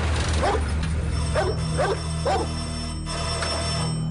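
A steady low drone from the trailer's score, with a run of about five short whining cries swooping up and down over it, roughly half a second apart.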